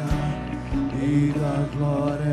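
Worship music: a wavering melody line over sustained low chords.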